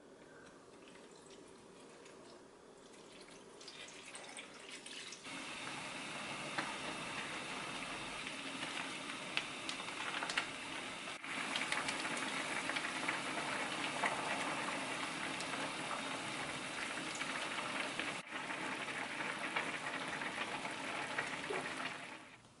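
Malatang broth boiling hard in a stainless steel pan: a steady bubbling, crackling hiss that swells in about four seconds in and stays loud.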